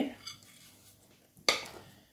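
A single sharp knock on a glass mixing bowl about one and a half seconds in, as sticky rocky road mixture is scraped out of it into a lined tin.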